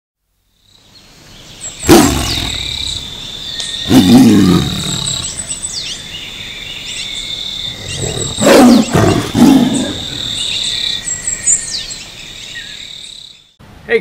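Tiger roar sound effect: four loud roars, the last two close together, over a jungle ambience of birdsong and a steady high tone, cutting off suddenly near the end.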